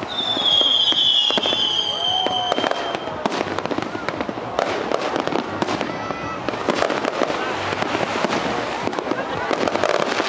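Fireworks display: a dense run of bangs and crackling bursts. A long high whistle, falling slightly in pitch, runs for the first two to three seconds, with voices of onlookers underneath.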